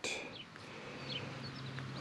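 Faint bird chirps, a few short high calls scattered through a quiet outdoor background, with a faint steady low hum underneath.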